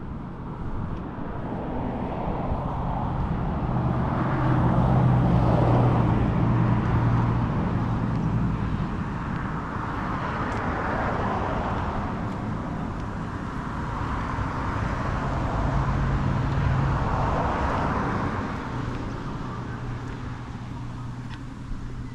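Cars passing one after another on the road alongside, the tyre and engine noise swelling and fading three times, loudest about five seconds in.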